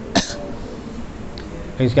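A man clears his throat once, a short sharp rasp about a fifth of a second in, followed by speech starting near the end.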